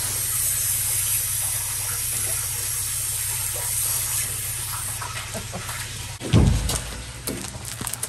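Pressure washer spraying water: a steady hiss of the jet over the machine's low steady hum. The spray fades about five seconds in, and a loud low thump follows about a second later, with a few sharp clicks.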